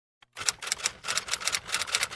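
Quick, even run of typing keystroke clicks, a typewriter-style sound effect to text being typed out, starting about a third of a second in.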